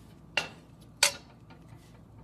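Two sharp clinks of a utensil against cookware, the second, about a second in, louder than the first.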